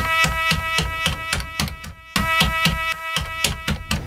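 E-mu SP-1200 sampler replaying one sampled horn stab in Multi Level mode as the pads are tapped in quick succession. It comes out as two stuttering runs of rapid repeats, each starting loud and dropping in volume like a delay effect.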